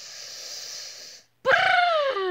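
A person's long breathy exhale, then, about one and a half seconds in, a loud wordless vocal whine that starts high, slides down in pitch and levels off.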